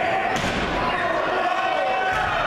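A heavy body-slam thud about half a second in, as a wrestler hits the floor, over crowd shouting and chatter.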